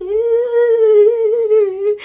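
A woman sings one long held note without words, wavering slightly in pitch, in imitation of a singer's vibrato.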